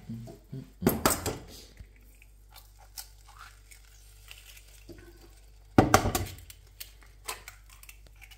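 Kitchen dishes and utensils clattering and clinking at the stove: a short burst of clatter about a second in and a louder one near six seconds in, with scattered faint clinks between.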